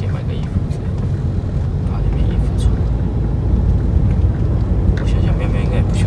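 Steady low rumble of road and engine noise inside a moving car's cabin, with quiet conversation over it.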